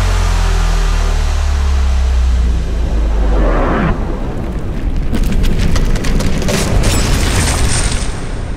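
Cinematic trailer-style sound design: a deep sub-bass boom that rumbles on for about four seconds, then a brief whoosh and a stretch of crackling, sputtering noise.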